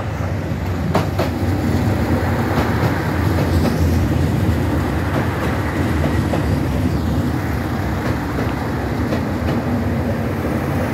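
JR Shikoku 2700 series diesel multiple unit pulling slowly into the platform close by: a steady low rumble of its diesel engines and wheels, growing louder in the first second, with a few sharp clicks from the wheels over the rails as the cars go past.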